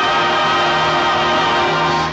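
A 1930s swing band and singers holding one long final chord, steady and loud, at the close of the number.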